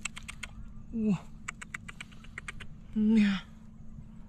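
A man's voice gives two short, falling exclamations, about a second in and about three seconds in. Between them come many scattered light clicks and ticks.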